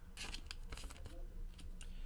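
Faint soft clicks and rustles of trading cards being handled and set down on a tabletop.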